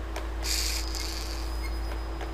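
Small geared motor briefly whirring as the P-controller drives its arm from 90 degrees back to zero: a short high hiss about half a second in, trailing into a thin fading whine. Underneath is a steady low electrical hum.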